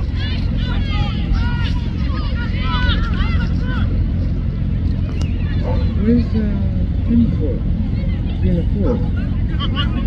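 Shouts and calls from people around a rugby pitch, with no clear words. High-pitched calls come in the first few seconds and a lower voice shouts later, over a steady low rumble.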